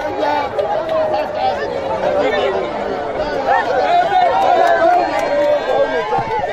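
Several people talking at once around a crowd on a busy street: overlapping voices and chatter, with no single voice standing out for long.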